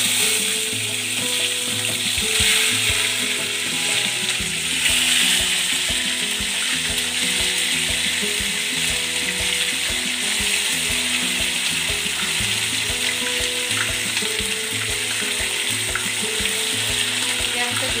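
Marinated chicken pieces frying in hot oil in a nonstick pan: a steady sizzle that swells louder as more pieces go into the oil, at the start and again about two and a half and five seconds in.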